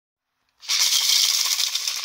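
A large gourd maraca covered in netting, shaken continuously, gives a dense, hissing rattle. It starts about half a second in and fades away at the end.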